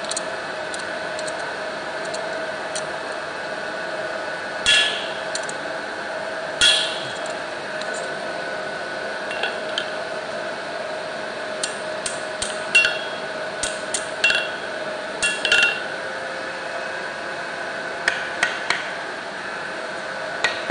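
Hand hammer striking a steel workpiece held in tongs on an anvil while forging a chisel, with sharp ringing metallic blows. A couple of separate blows come first, then a quicker run of strikes in the middle and a few more near the end, over a steady background hum.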